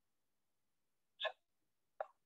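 Near silence, broken a little over a second in by one brief, faint vocal sound, a hiccup-like catch.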